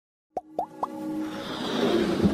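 Animated-intro sound effects: three quick pops, each sliding up in pitch about a quarter second apart, followed by a swelling whoosh as electronic intro music builds.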